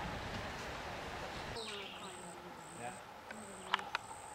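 A steady rushing noise, then a sudden cut to quieter outdoor sound. In it an insect repeats a high, short buzzing chirp about every half second, over faint distant voices. Two sharp clicks come near the end.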